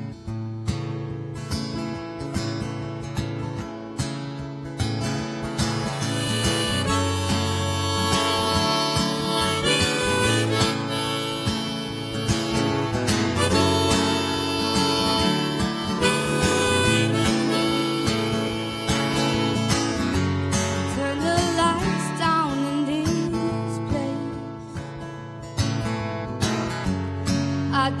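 Live band playing the instrumental intro of a pop song: a harmonica carries the melody over strummed acoustic guitar, with bass and drums underneath. The music starts suddenly at the beginning and runs steadily, with a woman's singing coming in at the very end.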